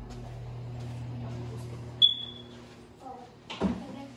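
A door latch clicks sharply with a brief high ring about halfway through, over a steady low hum.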